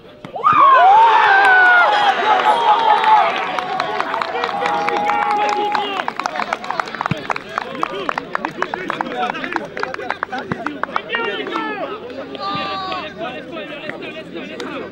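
Footballers yelling and cheering together just after a goal: a sudden loud outburst of several voices about half a second in, loudest for the first few seconds, then continuing shouts mixed with scattered sharp claps.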